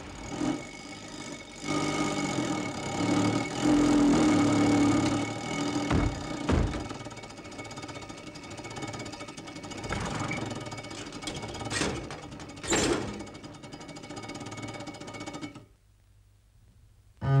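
Old car's engine running rough with a fast, loud rattling chatter and a few sharp bangs, then cutting out shortly before the end.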